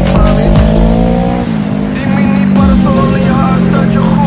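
Kawasaki ER-6n's parallel-twin engine through a Dominator aftermarket exhaust, rising in pitch under throttle for about a second and a half, then dropping off abruptly and running on steadily. Music plays alongside.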